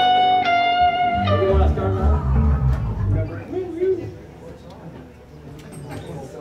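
Guitars on stage playing a few loose notes between songs: a held note rings for about a second, a few low notes follow, and then the playing dies away to a quiet room.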